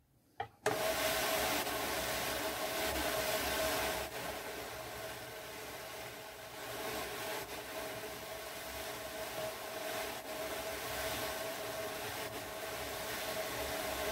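Ashford drum carder being cranked, its wire-toothed drums spinning and brushing fibre in a steady whirring hiss with a faint steady tone. It starts suddenly about half a second in and eases slightly from about four seconds in.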